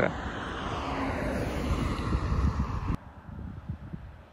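Outdoor street noise picked up by a phone microphone while walking beside a road: a steady hiss of traffic and wind that cuts off abruptly about three seconds in, leaving a much quieter ambience.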